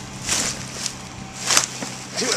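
A foot stomping down full plastic garbage bags in a wheeled trash bin: two crinkling crunches, one shortly after the start and a louder one about a second and a half in.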